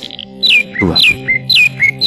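A bird calling over and over, a sharp falling whistled note about twice a second, each followed by a short lower chirp, over soft steady background music.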